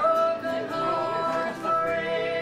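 Live church music: voices singing long held notes with acoustic guitar accompaniment.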